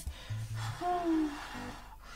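A man breathing out audibly with effort while holding a deep forward-bend hip stretch, over soft background music.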